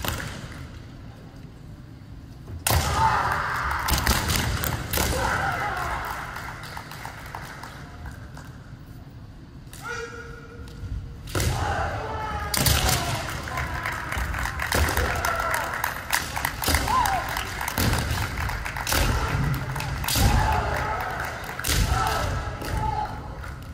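Kendo bout: fencers' long kiai shouts mixed with bamboo shinai clacking together and feet stamping on a wooden gym floor, echoing in a large hall. It starts suddenly about three seconds in, eases off mid-way, and picks up again about eleven seconds in.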